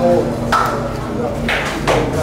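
Indistinct talking among several people, with a short high ping about half a second in and a brief knock near the end.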